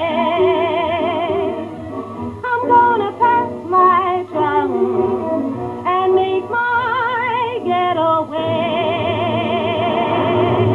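A woman singing long held notes with a wide vibrato over a band accompaniment, in the narrow, muffled sound of an old film soundtrack.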